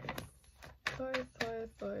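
A few light clicks of a tarot card deck being handled near the start, followed by a woman's voice saying "twist" three times.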